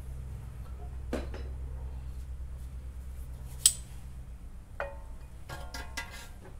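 A coilover strut being fed up into a car's front wheel well by hand. It gives one sharp metallic clink a little past halfway, then a few fainter clinks and a short ringing, over a steady low hum.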